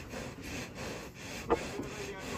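Cattle shifting in a wooden-sided truck bed: steady rubbing and scraping against the wooden planks, with one short sharp sound about one and a half seconds in.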